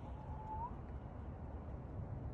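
Quiet outdoor street ambience: a low steady rumble, with one faint short rising note about half a second in.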